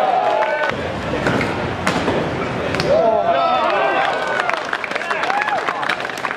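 A crowd of BMX riders shouting and cheering, loudest about three seconds in, over sharp knocks and clatter of bikes hitting the pavement, which come thick and fast near the end.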